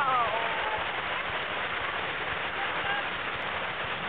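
Fast-flowing stream running through white water, a steady rush of water.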